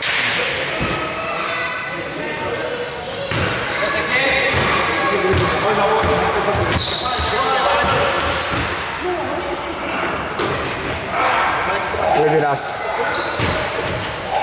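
Indoor basketball game sounds in a reverberant hall: a basketball bouncing on the court, several short high sneaker squeaks, and players' voices calling out.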